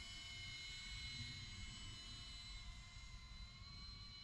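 Faint whine of a distant cinewhoop quadcopter's motors and ducted props: several thin tones at once that drift slightly up and down in pitch as the quad climbs over the trees.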